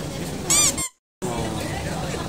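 A brief high-pitched squeak about half a second in, rising and falling in pitch. The sound then drops out completely for about a third of a second before a steady background resumes.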